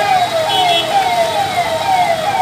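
Electronic siren with a fast, repeating falling wail, about three sweeps a second, over a steady hiss.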